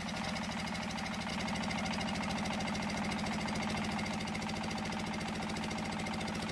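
Engine-driven sago grating machine (mesin parut) running steadily with a fast, even pulse as it rasps sago pith.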